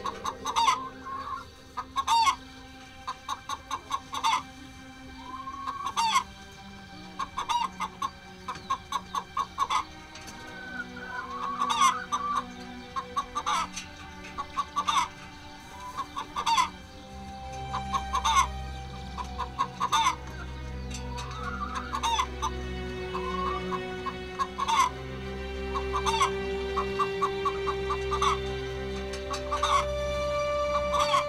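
Domestic hens clucking in a henhouse, short clucks in quick runs with a few longer drawn-out calls.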